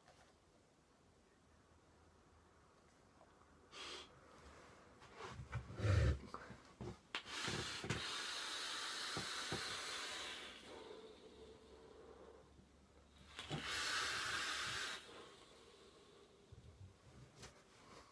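Vaping on a MOSFET box mod with a dripping atomiser coiled at 0.18 ohms. A long draw of about three seconds gives a steady airflow hiss, and a few seconds later a shorter, stronger exhale of vapour follows. Before the draw come handling knocks, the loudest a thump about six seconds in.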